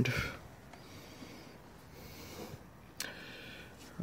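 A quiet pause with a low hiss and faint handling noise from a handheld camera being moved, and a single sharp click about three seconds in.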